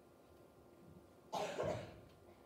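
A single loud cough about a second and a half in, over faint room tone.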